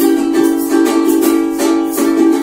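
Ukulele strummed in rhythmic chords.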